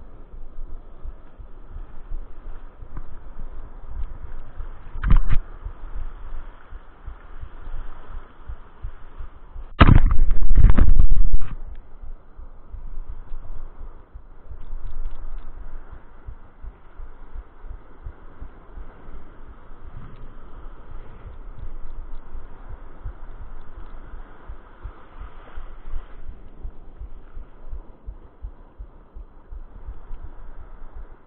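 Spinning reel being cranked on a surf rod while fighting a hooked fish, heard as low handling noise close to the reel. A sharp knock comes about five seconds in, and a louder burst of knocking and rumble lasts over a second around ten seconds in.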